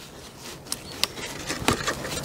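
Gloved fingers pressing fine seed compost down into the cells of a plastic seed tray: a soft rustle of compost with a few sharp clicks from the tray.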